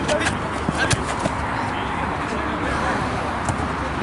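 Ambient noise of an amateur football match: a steady hubbub of distant voices, with a few sharp knocks in the first second, the sharpest about a second in.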